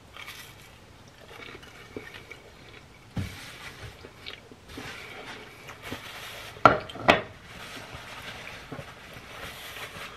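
Chewing a bite of a toasted grilled cheese sandwich, with small mouth and crust noises. About seven seconds in there are two louder short sounds as a paper towel is wiped across the mouth.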